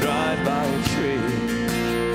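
A church worship band playing a hymn: strummed acoustic guitar over keyboard, with a voice singing the melody.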